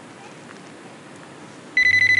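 Mobile phone ringing: a shrill electronic ring tone, rapidly pulsing, that starts suddenly near the end after a stretch of faint background hiss.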